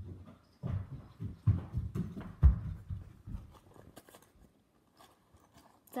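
Handling noise: a string of irregular low thumps and rustles as the phone is handled, the loudest bump about two and a half seconds in, then quiet.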